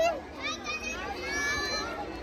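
Children's voices chattering and calling out over one another, a hubbub of a crowd of kids with no single clear speaker.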